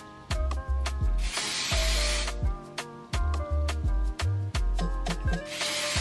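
Two bursts from an aerosol spray can, one about a second long starting about a second in and a shorter one near the end, over background music with a steady beat.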